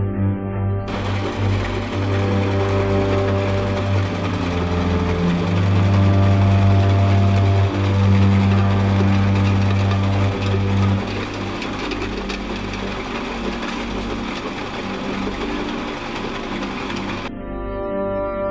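A crusher machine for broken brick and stone running with a steady, rapid mechanical clatter. It starts about a second in and cuts off suddenly near the end, over background music with sustained low notes.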